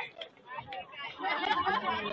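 Several voices calling out and chattering at once across an open soccer field, from players and the sideline, growing louder and busier in the second half, with a short sharp click about one and a half seconds in.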